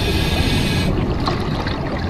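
Underwater bubbling and gurgling water noise, with a hissy upper layer during the first second that fades out, over a steady low rush.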